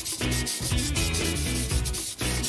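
Fingernails scratching skin in rapid repeated rasping strokes, over background music.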